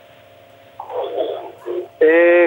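Telephone line with a faint hiss, then, about a second in, a garbled, smeared sound from a broken-up phone connection, the caller's voice arriving distorted just before clear speech resumes.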